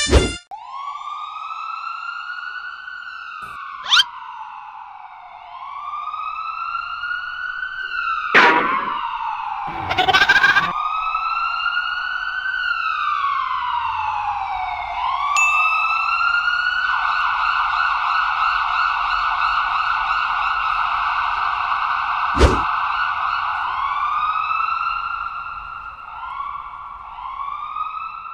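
Emergency vehicle siren wailing in slow rising and falling sweeps, switching to a fast warble for several seconds in the middle before returning to the slow wail. A few brief sharp swishes or clicks cut in along the way.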